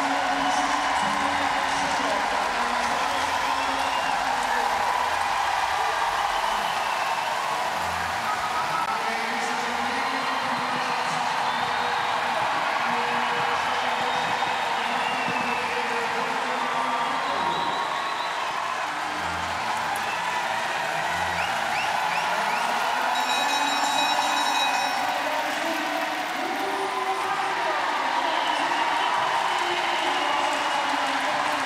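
Large arena crowd cheering and shouting continuously during a speed-skating race, with music and voices mixed into the din.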